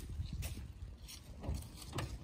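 Footsteps on wet pavement, a few soft, unevenly spaced steps, over a low wind rumble on the microphone.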